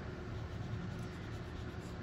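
Crayola marker's felt tip rubbing across drawing paper as an area is coloured in, a faint, steady sound.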